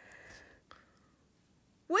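A faint breathy, whisper-like hiss for about the first half second, a light click, then quiet until a voice starts speaking right at the end.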